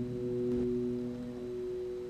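A held keyboard chord of a few notes slowly fading, part of slow instrumental music.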